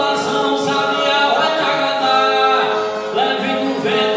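Cantoria de viola: a repentista singing an improvised verse in a sustained, bending melody over strummed ten-string viola.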